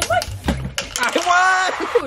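Young people's voices while jumping rope: a few sharp taps, likely the rope striking the floor, in the first second, then a long, high, held cheer in the middle.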